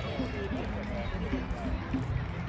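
Faint, indistinct voices of people out on the ground, short calls and chatter at a distance over a low outdoor rumble.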